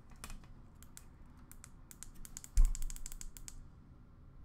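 Trading cards handled at close range: a run of light clicks and rustles of card stock and plastic. A soft thump about two and a half seconds in is the loudest sound.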